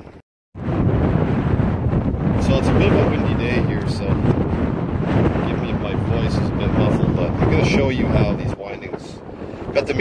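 Wind buffeting the microphone outdoors: a loud rumbling roar that eases near the end.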